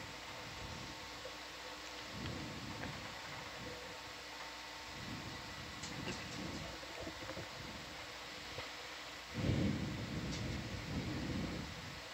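Control-room background noise: a low, uneven rumbling under a faint steady electronic hum, swelling noticeably about nine seconds in.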